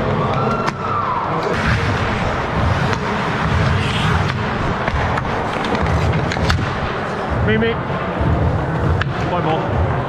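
Ice hockey play heard up close from the goalie's crease: skate blades scraping the ice, sharp clicks of sticks and puck, and low rumbling from movement against the helmet-mounted microphone, with players calling out.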